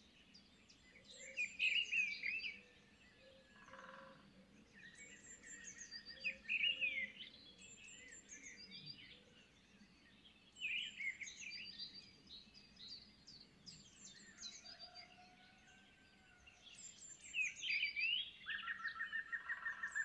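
Small songbirds chirping and singing in bursts a few seconds apart, quick high notes and short trills with a few brief steady whistled notes, over a faint hushed background.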